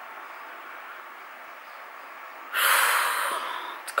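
A woman's heavy breath out close to the microphone, a sigh about two and a half seconds in that lasts about a second and fades, after faint room hiss.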